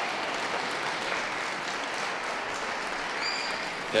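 Audience applauding steadily for a placing announcement.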